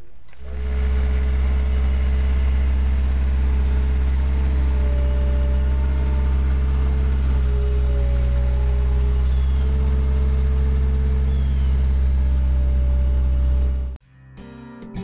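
Skid-steer loader's engine running steadily at one speed, a deep, even hum that starts about half a second in and cuts off suddenly at the end.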